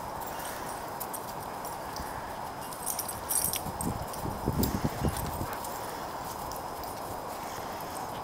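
Dogs' paws thudding and scuffling on dry grass and ground as a white German Shepherd and a puppy run and tussle. The thuds bunch together in the middle, over a steady background hiss.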